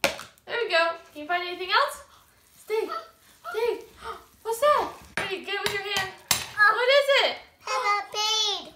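A young child's voice babbling and vocalizing in short high-pitched phrases without clear words, with a few sharp clicks in between.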